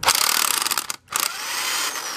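Electric impact wrench hammering at the 19 mm top nut of a strut assembly held in spring compressors. It rattles rapidly for about a second, cuts out briefly, then runs on more steadily with a faint whine.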